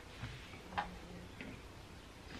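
A few short, light clicks and taps from hands handling fabric on a cutting mat, three in all, the loudest a little under a second in.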